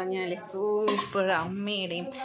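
A voice singing in long held notes that bend gently in pitch, with short breaks between phrases.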